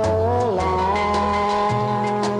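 Instrumental break of a honky-tonk country song: a lead instrument holds long notes and slides between pitches over bass notes and a steady beat.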